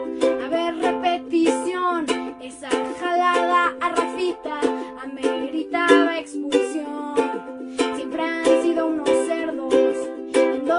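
Ukulele strummed in a steady rhythm while a girl sings along in Spanish.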